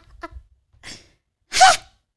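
A woman laughing: a few short soft laughs trailing off, then one loud, breathy burst of laughter about a second and a half in.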